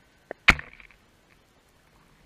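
Two sharp knocks picked up by an underwater camera, a faint one followed at once by a much louder one, each cutting off quickly.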